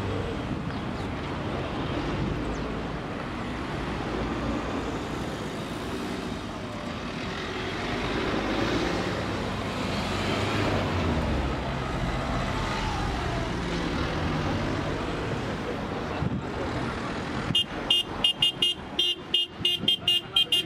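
Cars driving past with a steady rumble of engines and tyres. Near the end, car horns break in with a rapid series of short toots.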